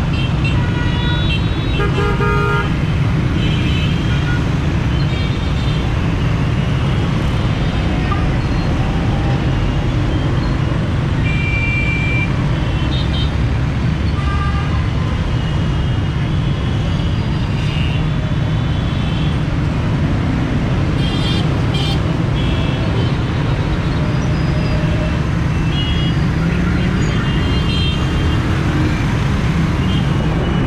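Motorcycle engine and road noise heard from the back of a moving bike in dense city traffic, with short horn toots from surrounding vehicles at several points.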